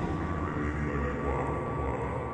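Modular synthesizer playing a low, steady drone with layered sustained tones above it and a few slow gliding tones that rise and fall.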